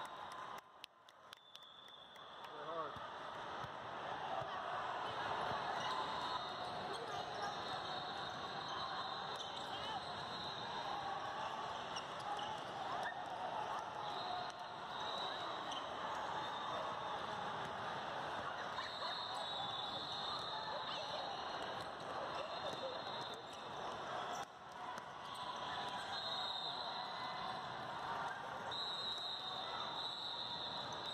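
Game sound in a large indoor hall: basketballs bouncing on a modular plastic court floor amid a steady hubbub of many voices from players and spectators.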